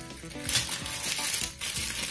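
Thin clear plastic bag crinkling and crackling as hands turn it over and open it to free a wristband, over quiet background music.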